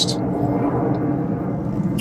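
A steady low rumble with a faint, even hum, unchanging throughout.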